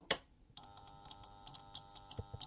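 Title-intro sound effect: a sharp click, then a steady electric-sounding hum of several tones with irregular ticks over it from about half a second in.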